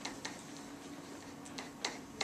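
Pen tip ticking against the surface of an interactive whiteboard while writing: a few light, sharp taps, two near the start and two more about a second and a half in.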